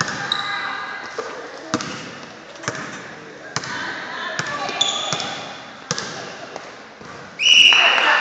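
A basketball bouncing on a hardwood gym floor every second or so, the bounces echoing in the hall over chattering voices. Near the end a referee's whistle blows one long, loud blast.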